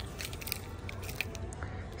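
Faint scattered clicks and crackles of merchandise being handled, as a card of earrings is picked up off a display, over store room noise.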